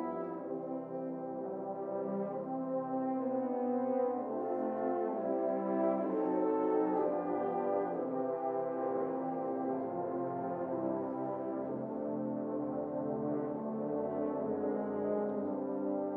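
A large French horn choir playing sustained chords together, the harmonies shifting slowly from one held chord to the next.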